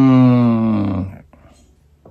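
A man's long hummed "mmm", held with a slight fall in pitch and stopping a little over a second in.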